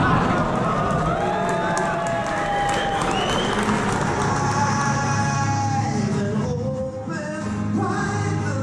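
Live solo acoustic set in a large hall: a singer with an acoustic guitar, with the audience clapping, cheering and whooping over the first few seconds before the music carries on alone.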